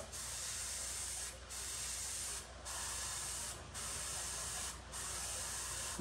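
Paint sprayer hissing in five passes of about a second each, with short breaks between, as paint is misted around the edges of a clear RC body to give a soft fade instead of a hard edge.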